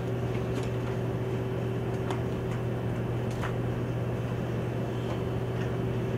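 Steady low room hum, with a few faint, brief strokes of a marker drawing short lines on a whiteboard.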